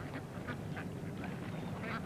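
Ducks quacking faintly a few times over a steady low hum.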